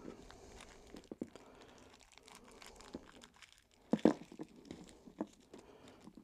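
Small plastic zip-lock bags crinkling faintly as they are pulled out of a hard plastic capsule, with a few light clicks, the sharpest about four seconds in.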